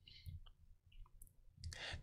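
Near silence, with a few faint, short clicks in the first half.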